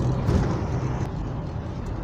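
Road noise inside a moving car's cabin on a wet road: a steady low hum from the engine and drivetrain under the hiss of the tyres.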